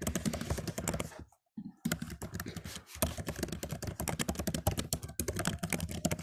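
Fast typing on a computer keyboard: a rapid, uneven run of key clicks, with a short pause about a second and a half in.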